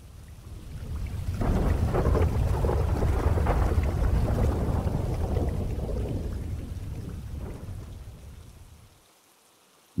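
A long roll of thunder with rain, swelling over the first two seconds and fading out by about nine seconds in.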